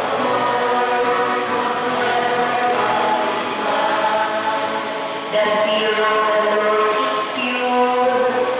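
A group of voices singing a slow church hymn in long held notes. The singing gets louder about five seconds in.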